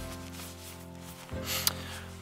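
Background music with soft rustling and rubbing of a nylon pouch being handled as its velcro top is pressed shut, and a brief sharp tick about one and a half seconds in.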